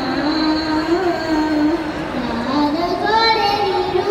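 A young boy singing a slow melody into a handheld microphone, holding long notes that bend in pitch; the line dips low a little past halfway, then climbs to a higher held note near the end.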